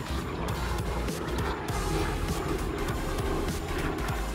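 Background music playing over the low, steady running of a small helicopter flying past overhead.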